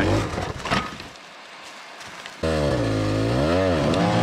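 Two-stroke enduro dirt bike engine revving under load on a steep climb. It is low for the first couple of seconds, then comes in loud about halfway through, its pitch rising, dipping and rising again as the throttle is worked.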